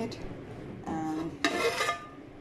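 Aluminium pot lid lifted off a cooking pot, with a bright metallic scrape and ring for about half a second near the end.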